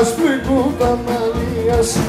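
Live Pontic Greek folk music: a singer with the band, the melody wavering and bending in pitch over a steady drum beat.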